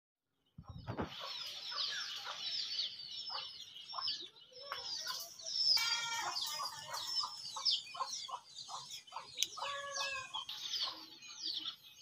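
Small birds chirping in a rapid run of short, high, falling chirps, with a chicken clucking in lower calls about six and ten seconds in. A brief low thump comes near the start.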